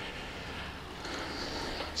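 Elite Novo smart turbo trainer running steadily under a road bike being pedalled, a low, even hum with a faint high whine in the second half.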